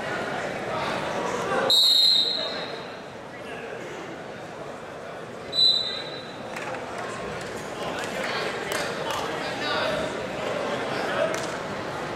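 Referee's whistle blown twice over crowd chatter in a gym: a longer blast about two seconds in and a short one near six seconds, stopping the action on the mat.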